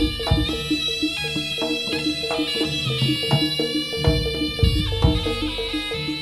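Javanese jaranan gamelan music played live: a reedy, shawm-like terompet carries a sustained melody over a fast, evenly repeating metallophone pattern. Deep kendang drum strokes come a few times, with a cluster of them in the second half.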